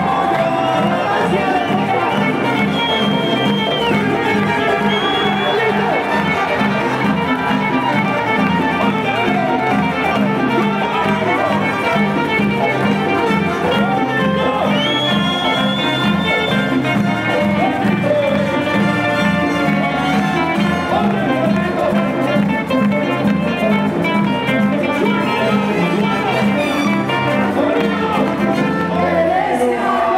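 Live bomba y plena band playing with a steady hand-drum beat: panderos and congas under saxophone and singing.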